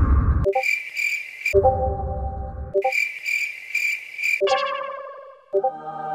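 Edited sound effects: two stretches of pulsing insect-like chirping, each about a second and a half long, alternate with a loud low buzzing tone. A short musical tune comes in near the end.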